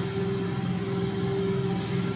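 Steady low hum made of a few held tones over a faint hiss, with no clicks or changes.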